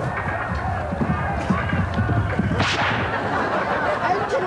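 Battle-scene sound effects: many men shouting over low thuds, with one sharp crack about two and a half seconds in.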